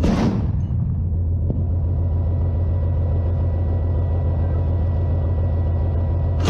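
BMP-2 infantry fighting vehicle's diesel engine running with a steady low rumble. A single shot from its 30 mm autocannon comes right at the very start.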